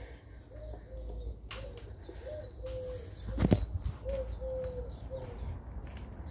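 A pigeon cooing: a run of low, steady hoots, grouped in short-then-long pairs. Faint higher bird chirps sound behind it, and a single sharp knock comes about halfway through.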